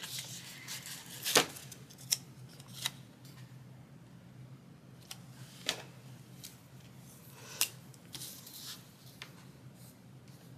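Paper sticker sheets being handled on a desk: light rustles with a handful of short clicks and taps, the sharpest about a second and a half in and again near three-quarters through, over a faint steady hum.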